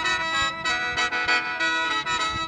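A khaen, the Lao bamboo free-reed mouth organ, playing the sutsanaen mode: several reed notes sound together over steady drone tones, pulsed in a quick rhythm by the player's breath.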